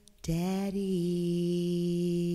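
A low held vocal note in a slow jazz ballad. It starts about a quarter second in after a brief near-silent pause, slides slightly down in pitch and then holds steady.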